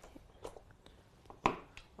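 A sharp click about one and a half seconds in: a magnetic Go stone being set onto a large wall demonstration board. A few fainter ticks from handling come before it, over quiet room tone.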